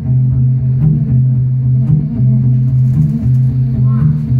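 Acoustic guitar playing a repeated low droning riff, with a strummed accent about once a second.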